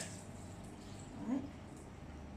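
Water poured from a glass jug into a blender jar of soaked cashews, faint and steady, ending before the lid goes on.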